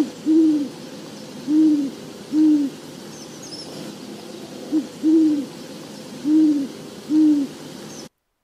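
Great horned owl hooting: deep, repetitive hoots in two matching phrases, each a short hoot, a longer one, then two more spaced hoots.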